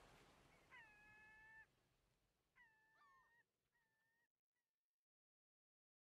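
Near silence: a faint hiss fades away under three faint, drawn-out animal calls, each held for under a second, and then the sound cuts off to dead silence.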